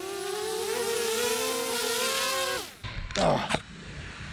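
Small quadcopter drone's propellers whining in a wavering multi-tone hum. After about two and a half seconds the motors spin down with a quick falling pitch and stop.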